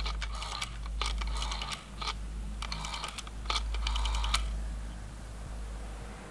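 Rotary telephone dial being turned and running back, several runs of rapid clicks over about four seconds as a number is dialled.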